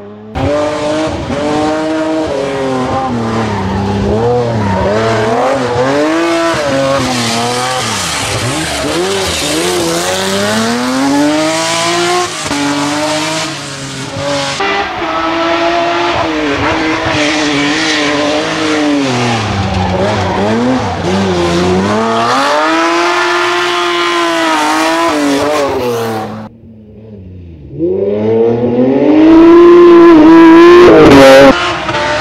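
BMW 3 Series rally car driven hard on a tarmac stage: the engine revs climb through each gear and fall at the shifts and as it lifts for corners. The sound cuts off about 26 seconds in, and a louder pass starts about two seconds later.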